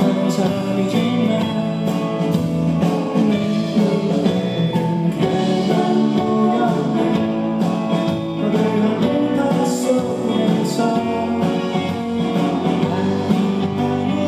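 A live indie pop-rock band playing: electric guitars, bass, keyboard and drums, with a male lead vocal singing over them.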